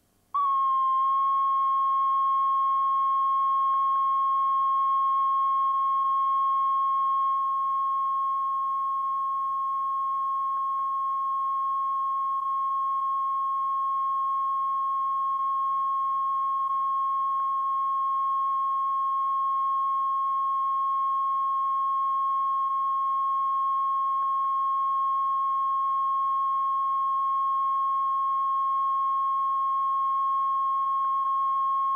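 Steady 1 kHz reference tone of a bars-and-tone leader on a VHS tape, switching on abruptly about half a second in and holding one unchanging pitch.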